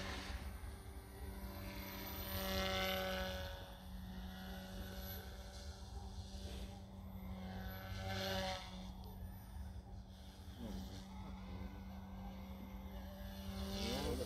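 Electric motor and propeller of a small radio-controlled model aircraft buzzing in flight. Its pitch rises and falls several times as it swoops and passes.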